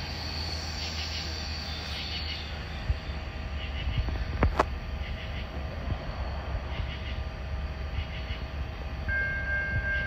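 Low, steady rumble of an approaching Norfolk Southern freight train led by EMD SD60E diesel locomotives, slowly growing louder. A sharp click comes about four and a half seconds in, and a steady high tone begins near the end.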